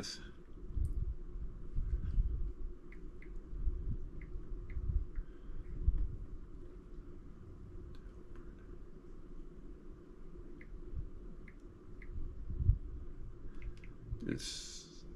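Faint handling noises: soft low bumps and scattered light clicks, over a steady low hum.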